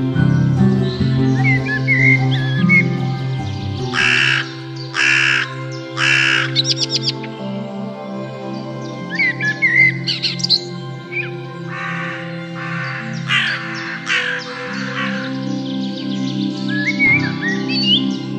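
A crow cawing three times about four seconds in and three more times about twelve seconds in, with small birds chirping in between, over calm background music of sustained keyboard tones.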